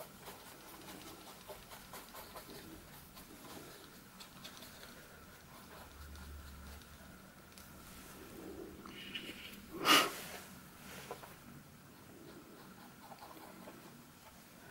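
Quiet, faint scratchy strokes of a watercolour brush on textured paper, with one short louder sound about ten seconds in.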